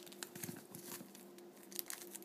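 Faint crinkling and light clicks of a foil trading-card pack wrapper being handled, with a couple of sharper clicks near the end, over a low steady hum.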